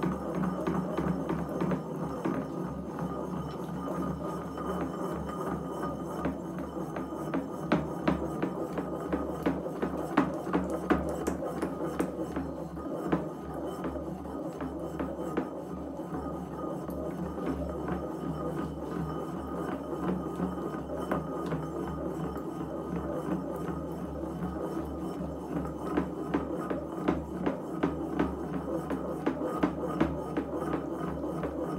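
Pestle knocking and grinding in a large ceramic mortar, churning a liquid mixture with frequent irregular knocks, over a steady droning hum.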